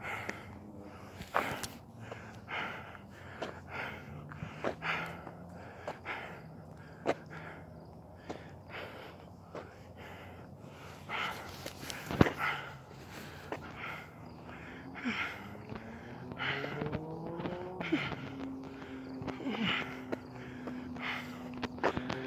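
A man's heavy, laboured breathing from exertion, with his footsteps, while walking hard, in an even rhythm of about two breaths or steps a second. Faint low humming that glides up and down comes in over the last few seconds.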